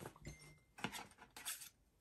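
Faint handling noise: a few light taps and rustles of paper and card as items are taken out of a small cardboard box.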